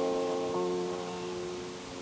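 An electric guitar chord held and ringing out, slowly fading away.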